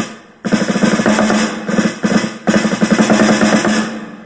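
Electronic snare drum sound triggered from a KAT FSR drum pad struck with drumsticks. It starts about half a second in as a fast roll of strikes that swells and eases in loudness.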